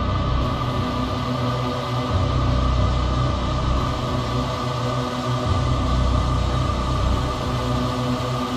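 Techno track in a breakdown: sustained droning synth tones over long bass notes that swell and fade every few seconds, with no kick drum.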